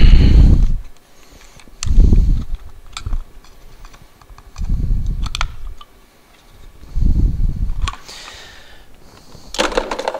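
Microphone handling noise while a wireless mic's battery is swapped: four deep rubbing thumps about a second long each, every two seconds or so, with small clicks and fumbling between them.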